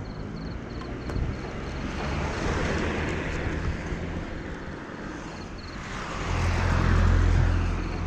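Riding a sport motorcycle: steady engine and wind noise that swells about two seconds in and again, louder and with a deeper rumble, from about six to seven and a half seconds in.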